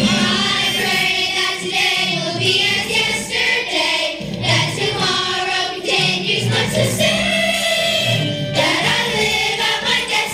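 Children's choir singing together with instrumental accompaniment, a slow sustained melody.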